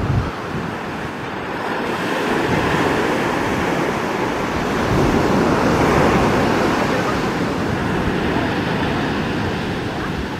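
Surf breaking on the shore with wind buffeting the microphone, swelling to its loudest about five to six seconds in, with the low drone of a twin-engine jet airliner on final approach underneath.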